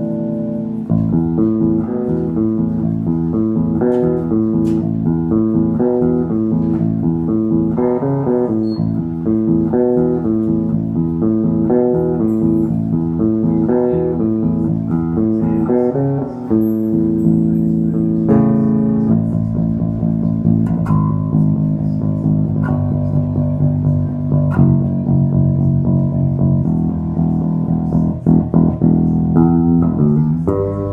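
Moon MBC5-TN five-string electric bass with a through-neck and maple neck, played solo. For the first half it runs a quick melodic line of rapidly changing notes; about halfway through it shifts to lower, longer-held notes and chords.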